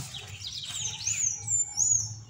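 A bird singing outdoors: a quick high trill about halfway in, then a few high slurred whistles, loudest near the end.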